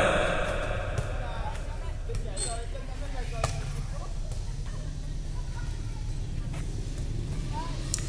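Rally sounds from a game of air volleyball, played with a light inflatable ball: a few faint, sharp taps as players hit the ball, the clearest about three and a half seconds in. Under them are a steady low background rumble and faint voices.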